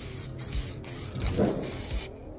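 Aerosol spray-paint can spraying, a loud steady hiss broken several times by short pauses as the nozzle is pressed and released.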